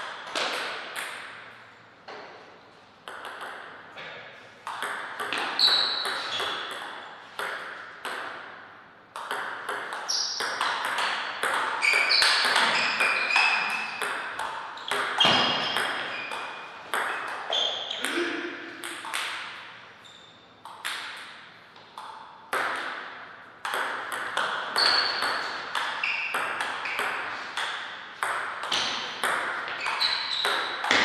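Table tennis ball in play: rapid series of sharp clicks as the ball is hit by the bats and bounces on the table during rallies, with short pauses between points.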